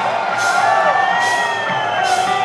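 Live blues-rock band playing through a large PA, with electric guitar and drums and a cymbal struck on a steady beat about every 0.7 seconds. A long held note bends up in pitch and falls back, while the audience cheers and whoops.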